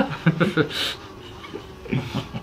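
Speech: men talking, with a short breathy chuckle under a second in, then a brief pause before talking resumes.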